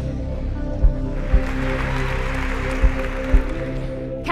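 Title-sequence music: long held synth tones over soft low thumps that come in pairs, with a hiss-like swell rising about a second in and fading near the end.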